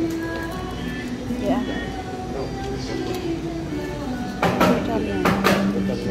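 Café background: music playing under people's voices, with a few sharp clacks near the end.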